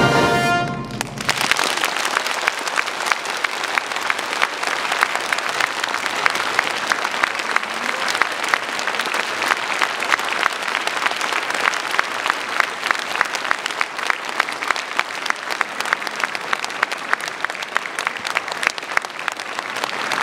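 A wind ensemble's sustained final chord cuts off about a second in, followed by an audience applauding steadily with many overlapping claps.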